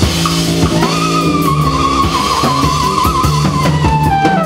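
A flugelhorn plays a long held note that wavers, then falls in steps near the end, over a jazz band's bass and drums.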